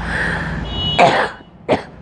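A person clears their throat with a rough cough-like burst about a second in, followed by a short sharp sound, over steady background noise.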